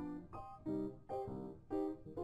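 Background music: a piano playing a series of struck chords, each chord ringing briefly before the next.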